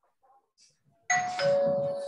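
A two-note chime, a higher tone then a lower one, starting about a second in, with the lower note held for about a second.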